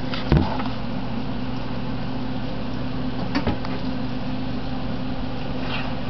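Breaded okra frying in hot olive oil in a skillet: a steady sizzle over a low hum. A spatula knocks sharply against the pan about a third of a second in, and more lightly near the middle.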